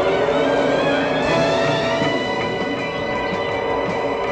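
Film soundtrack music: layered, sustained tones, some sliding slowly in pitch.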